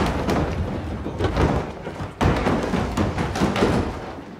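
A large travel trunk tumbling down a flight of stairs: a rapid, irregular run of thuds and bangs, with a sudden louder crash about two seconds in.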